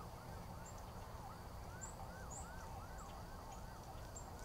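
A faint, distant siren sweeping rapidly up and down in pitch, about two to three sweeps a second, with scattered short high chirps over a low rumble.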